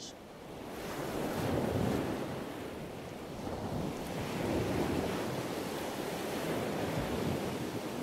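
Ocean waves washing in a steady rush that swells and eases slowly.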